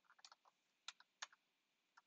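Faint computer keyboard keystrokes: a quick run of taps, then two louder clicks about a second in, then a pause.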